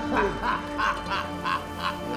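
A man laughing in a slow, rhythmic run of about three bursts a second, over a steady droning music bed.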